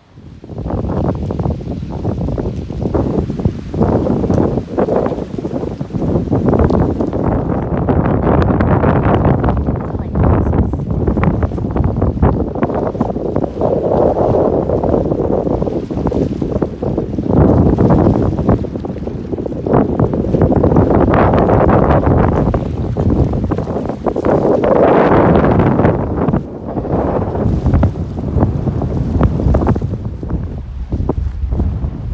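Strong gusty wind buffeting a phone microphone, a loud rumbling roar that swells and eases in repeated gusts.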